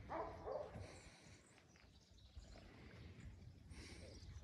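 Near silence, broken in the first second by two faint short calls from an animal.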